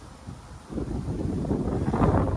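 Wind buffeting the microphone: a low, fluttering rumble that picks up less than a second in and carries on.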